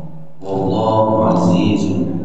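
A man reciting a religious text aloud from a book in a melodic, chant-like voice, starting about half a second in after a short pause.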